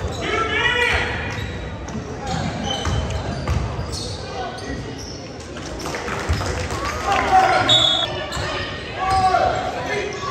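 A basketball bouncing on a hardwood gym floor during live play, mixed with shouting voices that echo in the large gym.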